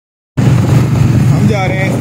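Loud, steady low rumble of a moving motorcycle, its engine mixed with wind on the microphone while riding. It cuts in abruptly just after the start.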